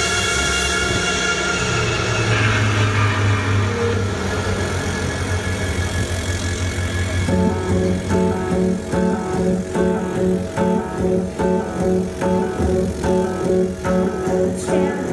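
Synth-driven electronic rock playing loud over a festival PA: a sustained synth drone at first, then a low bass drone, then about seven seconds in a steady pulsing synth pattern sets in at roughly two to three pulses a second.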